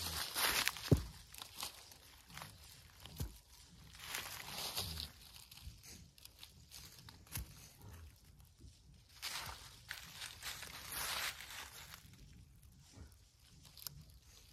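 Irregular rustling and crunching of dry fallen leaves as a person shifts and steps about while setting hedge apples in a row on a wooden plank, with a few light knocks.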